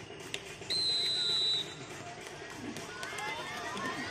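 A referee's whistle blown once: a single steady, high blast lasting just under a second. Men's voices call out from the sideline near the end.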